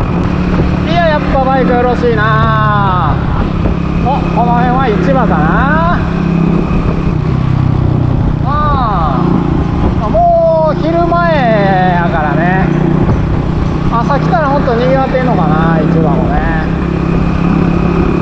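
Motorbike engine running steadily at cruising speed, with wind and road noise. A person's voice sounds over it in several short stretches without clear words.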